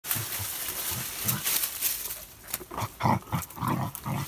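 A dachshund making short low grunting and snuffling sounds one after another as it noses a basketball, with rustling and crackling of dry leaves under it. The grunts come closer together in the second half.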